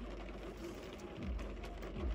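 Quiet car cabin: a low, steady rumble with faint background hiss during a pause in the talking.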